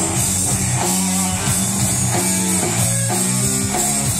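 Live rock band playing an instrumental stretch: electric guitar over a drum kit, with no vocals.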